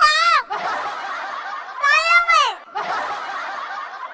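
A high-pitched voice laughing in a dubbed TikTok audio clip: a short vocal sound at the start and a longer one about two seconds in that rises and then falls in pitch, with a steady hiss of background noise between them.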